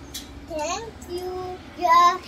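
A young girl's voice singing a few short notes without clear words: one note dips and rises, one is held briefly, and a louder note comes near the end.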